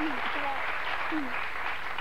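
Studio audience applauding steadily, with a voice faintly heard over it.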